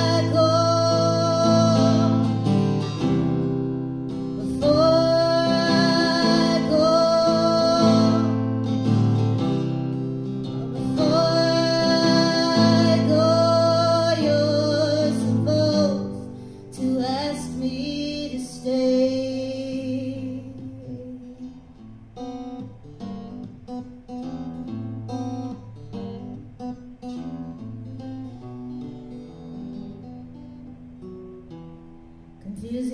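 Live folk song: a woman singing with vibrato over acoustic guitar for about the first twenty seconds, then the guitar plays on alone, growing quieter toward the end.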